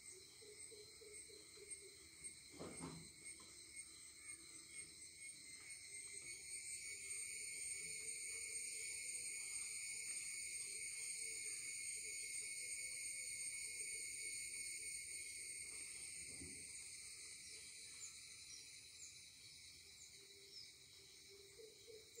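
Faint, steady chirring of insects in several high pitches, swelling in the middle and easing toward the end. Two soft thumps, about three seconds in and again near sixteen seconds.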